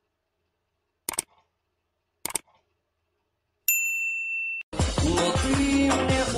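Two short mouse clicks about a second apart, then a bright bell-like notification ding that rings for about a second: the sound effects of a YouTube subscribe-and-bell animation. Loud music starts near the end.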